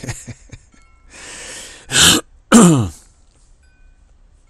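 A man gives a short breathy laugh, then clears his throat twice, loudly, about half a second apart, the second ending in a falling grunt.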